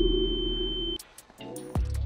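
Background music from the edit: a loud sustained electronic synth tone that cuts off suddenly about a second in, then a beat with deep kick drums comes in near the end.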